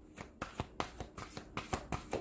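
Tarot cards being shuffled by hand: a run of quick card clicks, several a second.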